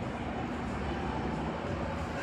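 Steady outdoor background noise: an even low rumble with no distinct events.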